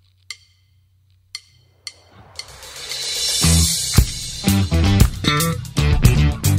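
A few sharp clicks over a low hum, then a cymbal swell rising from about two seconds in. A band comes in at about three and a half seconds: drum kit, bass guitar and electric guitar playing together.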